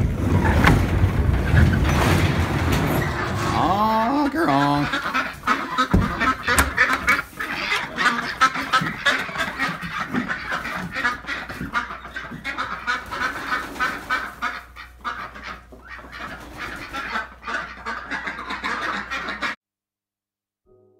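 A flock of domestic ducks quacking loudly and rapidly, a constant chorus of calls, after a loud rumble in the first few seconds as the coop door is opened. The sound cuts off abruptly just before the end.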